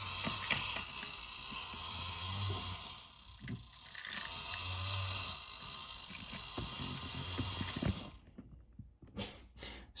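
Spring-wound clockwork mechanism of a 1950s Alps tin toy robot running as the robot walks: a fast, steady ticking with a low hum that swells twice. The sound cuts off about eight seconds in, leaving only a few faint clicks.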